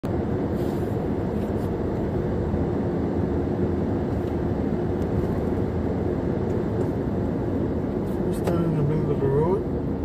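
Steady road and engine noise of a car cruising at about 35 mph, heard from inside the cabin. A person's voice briefly sounds near the end.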